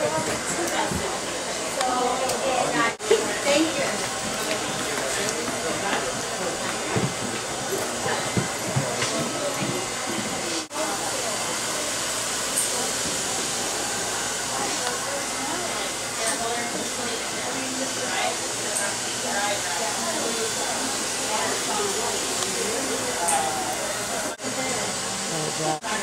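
Indistinct voices talking over a steady hiss, with three brief dropouts in the sound.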